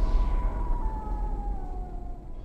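Title-card sound effect: a loud, deep rumble under a whining tone that slowly slides down in pitch, fading gradually.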